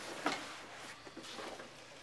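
Faint rustling and soft knocks of a fabric rifle bag being handled, the clearest knock about a quarter of a second in.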